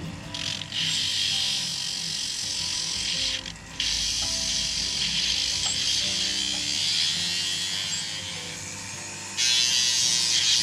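Small rotary carving tool with a cutting bit grinding a slot into the edge of a wooden fin: a steady high-pitched whine with grinding. It stops briefly twice, about half a second in and about three and a half seconds in, softens near the end, then picks up louder just before the end.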